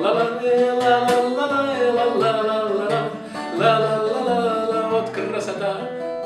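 A man singing a Russian bard song, with long held notes, to his own strummed steel-string acoustic guitar.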